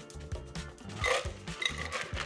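Background music, over a frothy cocktail being strained from a shaker into a glass, with a short hiss of pouring about a second in.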